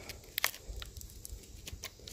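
Knife blade prying and picking into splintered wooden board: a scatter of small cracks and ticks of wood fibres breaking, the sharpest two about half a second in.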